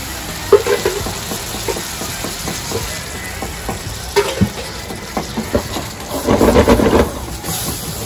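White sauce sizzling in a hot frying pan of oil and sautéed green chillies as it is stirred with a silicone spatula, with small scrapes and pops. The sound gets louder for about a second, some six seconds in.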